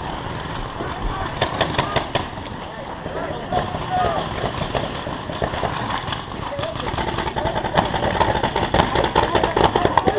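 Paintball markers firing: many sharp, irregular pops from several guns at once, mixed with players shouting.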